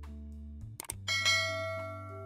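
A short click, then a bright bell chime about a second in that rings and fades away: the sound effect of a subscribe-button and notification-bell animation. Soft background music with steady low notes plays underneath.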